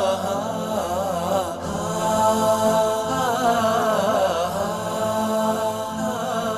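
Background vocal music: chanted, unaccompanied singing with long held notes that waver in pitch, running throughout.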